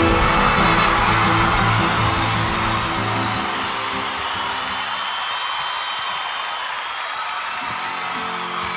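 Music: a band's final chord ringing out after a last hit, its low notes fading away a few seconds in and leaving a quieter, fading wash.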